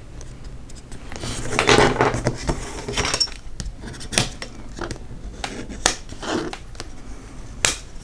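Paper rustling and crinkling as a small printed paper record sleeve is folded and its crease pressed flat with a metal ruler, with several sharp clicks and taps, the loudest near the end.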